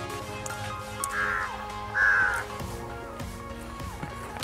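Background music playing steadily, with a crow cawing twice, about a second apart, partway through.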